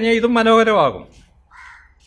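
A man speaking Malayalam, holding one long drawn-out syllable that ends about a second in. A pause follows, with a brief faint harsh sound near the end.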